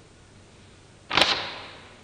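One sudden sharp swish with a click at its peak, about a second in, trailing off over about half a second.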